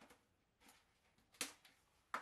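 Near silence broken by a few faint ticks and one sharp plastic click about one and a half seconds in, from plastic takeaway containers being handled.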